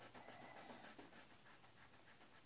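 Coloured pencil shading on paper: faint, rapid back-and-forth scratching strokes.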